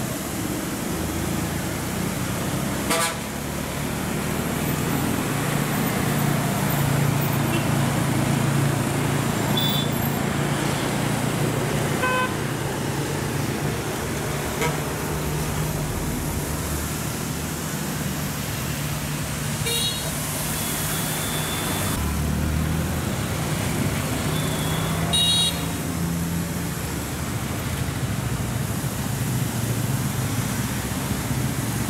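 Road traffic on a hill bend: a bus engine running with a steady low drone, and several short vehicle horn toots spaced through, about five in all.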